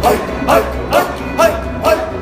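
Sufi zikr chanting: voices calling out a short sharp exclamation in a steady fast rhythm, about two a second, over a low steady hum.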